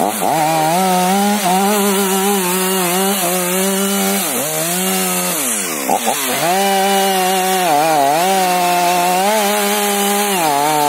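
STIHL MS 500i fuel-injected two-stroke chainsaw running at high revs as it cuts into the base of a fir trunk. About halfway through, its pitch drops briefly twice and climbs back to full speed.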